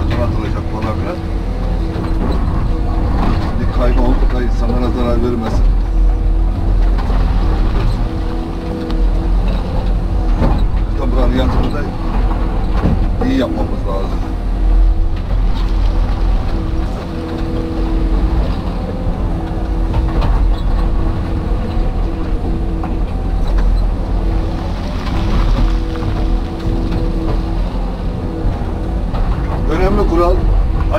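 Excavator working under load, heard from inside the cab: the diesel engine runs steadily with a hydraulic whine that comes and goes as the arm and bucket move. The bucket digs and scrapes through loose rock, with knocks and clatter of stones.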